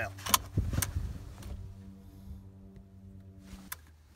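Stainless-steel Gozenta tongue pushed into a car's seat-belt buckle, latching with two sharp metallic clicks in the first second amid some handling noise. A steady low hum follows in the second half and ends with a click near the end.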